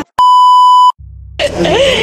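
A loud, steady electronic bleep tone of under a second, edited into the soundtrack. It cuts off to a brief low hum, and voices return about a second and a half in.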